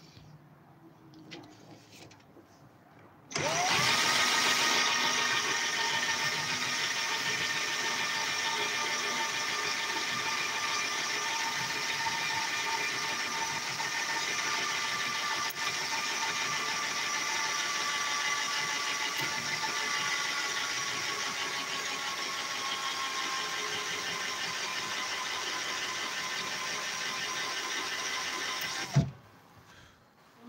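Bosch cordless drill spinning a circular-saw armature while a file scrapes its copper commutator. The drill's whine rises to speed about three seconds in and runs steadily with a scraping hiss, the pitch sagging slightly, then stops suddenly just before the end.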